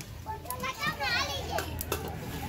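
A group of children chattering and calling out over one another.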